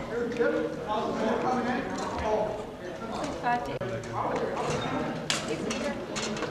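Rattan practice swords knocking on wooden shields and armour in sparring, a few sharp blows with the clearest about five seconds in, amid the voices of people in a large hall.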